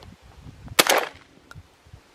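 A single shot from a Pointer Phenoma 20-gauge gas-operated semi-automatic shotgun about three-quarters of a second in, a sharp report with a brief echo trailing off.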